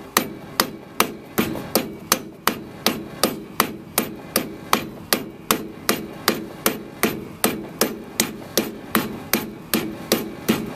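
Rubber mallet tapping a metal grease cap onto a trailer wheel hub, a steady run of sharp blows close to three a second, each with a short ring.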